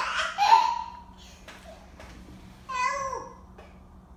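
A toddler's high-pitched squealing vocal sounds, not words: one right at the start and a shorter call that falls in pitch about three seconds in.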